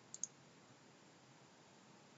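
A computer mouse clicking twice in quick succession, then near silence with a faint steady hiss.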